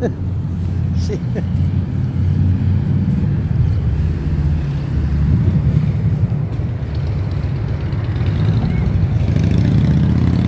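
Loud, steady low rumble that swells slightly near the end, with a woman's short laugh and a word about two seconds in.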